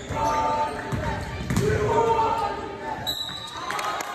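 A basketball bouncing on a hardwood gym floor during play, amid shouting voices of players and spectators in the gymnasium.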